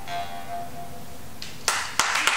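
A marranzano (Sicilian jaw harp) and a plucked string instrument sound a last note together, with steady tones fading. About three-quarters of the way through, audience applause breaks out.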